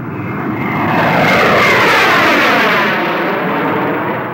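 Jet aircraft flying past overhead: the sound swells to a peak in the middle and fades, its whine falling in pitch as they pass.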